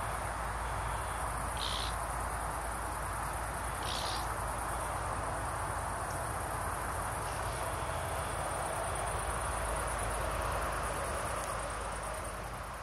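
Insects, crickets or bush crickets, chirring in a high, steady, finely pulsing chorus throughout. It sits over a continuous rush of outdoor background noise with a low wind rumble. A few short, higher chirps come about two, four and seven seconds in.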